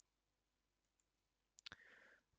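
Near silence, then two sharp computer mouse clicks about one and a half seconds in, followed by a faint short hiss.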